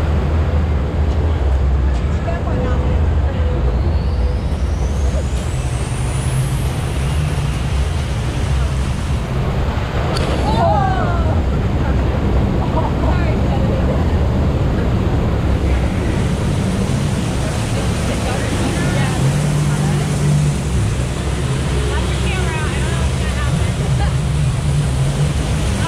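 River-rapids raft ride running through churning water: a steady, loud rush with a heavy low rumble from the water and ride machinery. Riders' voices rise briefly about halfway through and again near the end.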